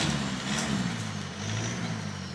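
Maruti Gypsy's engine, which the uploader says is a 1.6 Baleno engine, pulling the jeep slowly over a rough dirt track, its revs rising and falling twice.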